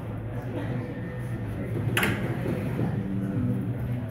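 Live-venue background murmur of voices over a low, steady drone from the stage rig between songs, with one sharp clack about two seconds in.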